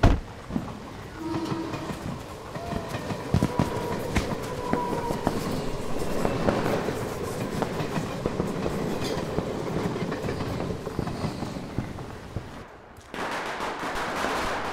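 A single thud, then a steady rumbling, clattering noise that grows louder over several seconds and cuts off abruptly near the end.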